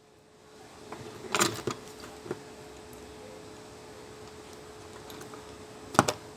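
A few light clicks and taps of a circuit board and soldering tools being handled on a workbench, the sharpest about a second and a half in, over a faint steady hum.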